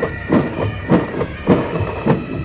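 Military pipe band playing a march: a bass drum beats steadily a little more than every half-second, with lighter drum strokes between, under a steady high drone.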